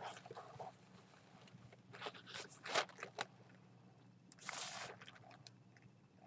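Faint rustling of white tissue wrapping as a skein of yarn is lifted out and handled. It comes in a few short spells: at the start, two to three seconds in, and about four and a half seconds in.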